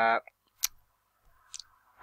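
Two computer mouse clicks: one sharp click about two-thirds of a second in, and a fainter one about a second later.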